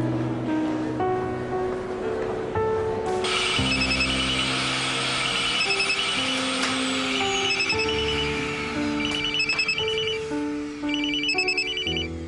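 A mobile phone ringing in repeated groups of short, high trilling beeps over the steady whoosh of a canister vacuum cleaner, which starts abruptly about three seconds in. Background music plays throughout.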